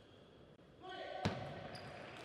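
Table tennis ball struck sharply once by a bat, a single crisp click about a second and a quarter in, ringing briefly in a large hall.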